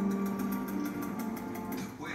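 Documentary soundtrack music playing from a television: a low held note with a fast, even ticking over it.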